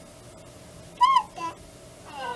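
Infant's short high-pitched squeal about a second in, rising then falling in pitch, followed by a fainter second sound, played from a video over the hall's speakers.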